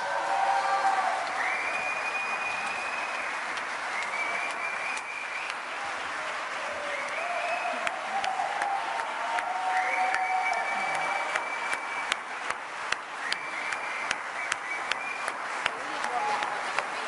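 Audience applauding, with cheering voices over the clapping. In the second half the applause thins, and separate sharp claps stand out.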